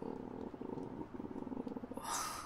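Stomach growling from hunger: a long gurgling rumble with fine rapid pulsing, dipping briefly about a second in before going on.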